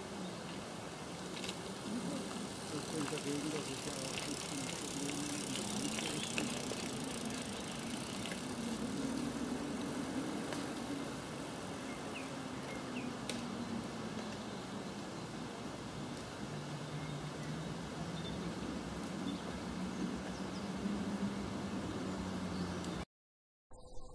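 Faint, indistinct talk from people, too unclear to make out words, over a steady outdoor background hiss. A low drone rises and falls slowly in the middle and settles lower near the end.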